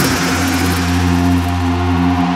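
House music on a club sound system, in a breakdown: a held deep bass chord sustains with no clear beat.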